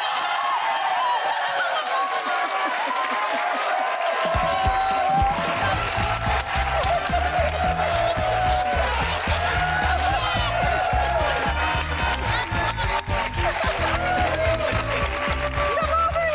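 A woman screaming in delight over studio audience cheering and applause as a game-show jackpot is won. Upbeat game-show win music plays, and a steady bass beat comes in about four seconds in.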